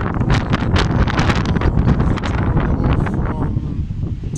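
Wind buffeting the microphone: a loud, continuous rumble with no let-up.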